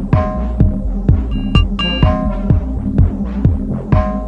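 Instrumental post-dubstep electronic music: a deep kick drum about twice a second over a sustained low bass and held synth chords.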